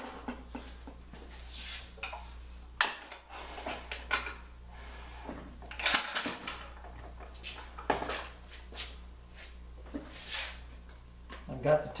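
Aluminium extrusions and metal fittings of a drill press table being handled and shifted: scattered metallic clicks and knocks with a few brief sliding scrapes. A steady low hum runs underneath.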